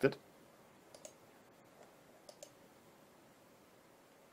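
Faint computer mouse button clicks: a pair about a second in, and another pair around two and a half seconds in, as a COM port is chosen from a dropdown and the dialog confirmed.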